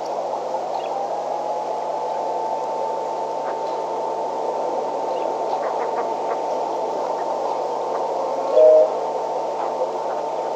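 Steady hiss and hum from a live webcam's microphone feed, with a faint steady whine. A short, loud two-pitched beep sounds about a second and a half before the end.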